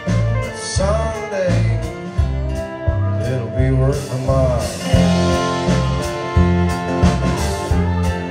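A live country band playing an instrumental passage: a fiddle bowing a melody over a strummed acoustic guitar and an electric guitar, with a regular low beat underneath.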